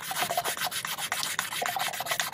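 Wet sandpaper scrubbed quickly back and forth over the cut end of a copper pipe, a fast run of short scratchy strokes, cleaning the pipe end for a push-fit SharkBite fitting.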